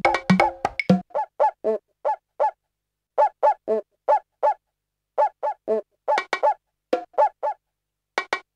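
Korg Electribe SX playing back a sampled drum pattern. About a second in, the kick and most other parts drop out. What is left is a sequence of short pitched percussion hits at several pitches, in a syncopated rhythm with small gaps between the groups. Faint bright hits come back near the end.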